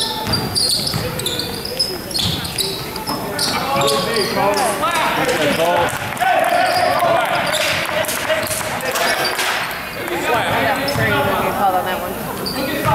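A basketball bouncing on a gym's hardwood floor in a series of knocks as players move up the court, with shouting from spectators and players echoing around the hall.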